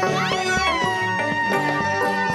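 Live gospel praise music: a woman's singing voice slides up and back down, then holds a long steady note over band accompaniment with a steady beat.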